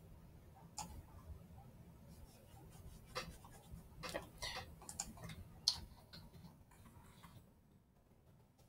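Faint, irregular clicking of a computer keyboard and mouse, busiest in the middle, with one sharper click a little past the midpoint.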